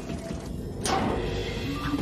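Cartoon soundtrack: soft background music with a quick whoosh effect a little under a second in.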